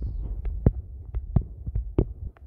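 A low steady hum with a string of small, sharp, irregularly spaced clicks, about a dozen in two seconds.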